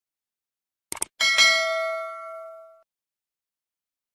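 Subscribe-button sound effect: a quick double mouse click about a second in, followed by a bright bell ding that rings out and fades over about a second and a half.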